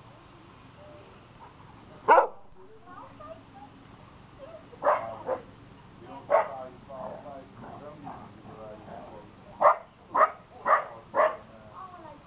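A dog barking: one loud bark about two seconds in, two more a few seconds later, then a run of four barks about half a second apart near the end.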